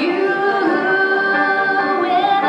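A woman singing a pop ballad live into a microphone, holding a long note through most of the moment, with grand piano accompaniment.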